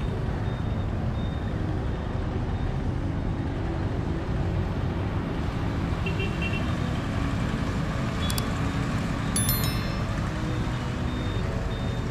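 Street traffic: a steady low rumble of motorbikes and other vehicles running past. A few short high clicks or beeps sound late on.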